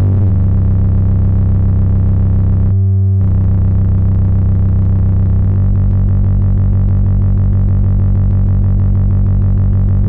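Serge modular synthesizer playing one steady low drone, waveshaped through the Extended ADSR module, its timbre shifting as a knob is turned. The tone briefly changes character about three seconds in, and its low end changes again a little past halfway.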